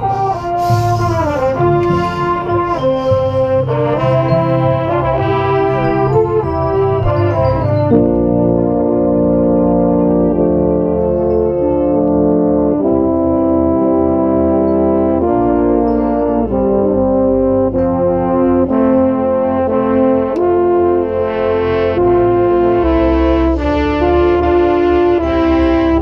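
Drum corps brass line playing, with a marching baritone heard close up: quickly moving lines for the first eight seconds or so, then full sustained chords that change every second or two.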